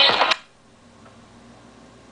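Music played through a vintage JSL 1511-S wall speaker, as a test that it works, cuts off suddenly about a third of a second in. A faint steady hiss with a low hum follows.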